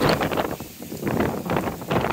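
Wind buffeting the microphone in uneven gusts, with a brief lull about a second in.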